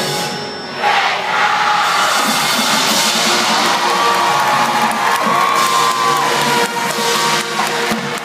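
Marching band playing on a field, with a crowd cheering that swells up suddenly about a second in.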